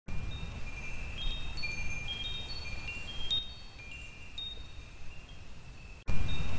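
Wind chimes tinkling: many high ringing notes start and overlap over a low rumble, growing quieter about halfway through.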